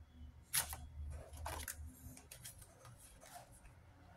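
Stiff printed cards and paper being handled, with short rustles and flicks and one sharp snap about half a second in, over a faint low hum.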